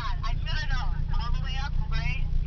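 Low, steady rumble of a moving car heard from inside the cabin, with indistinct talking over it.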